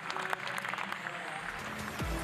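Scattered clapping over a steady background of pool-hall noise, with a low hum coming in near the end.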